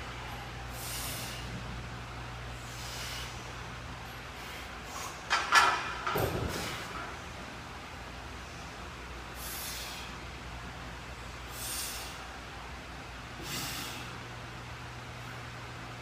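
A lifter's sharp breaths while squatting under a heavy barbell, coming about every two seconds, with a louder, sharper burst about five seconds in, over a steady low electrical hum.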